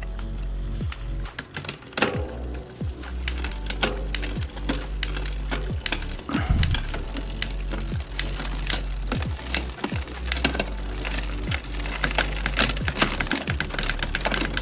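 Bicycle chain running over the rear cassette, derailleur pulleys and chainring as the crank is turned by hand, a rapid irregular clicking. The chain is being run to test a newly fitted SRAM 11-speed quick link.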